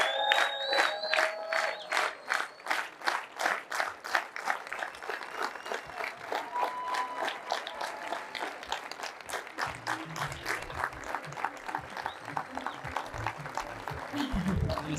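Audience clapping together in a steady rhythm, about four claps a second, with voices over it in the first couple of seconds.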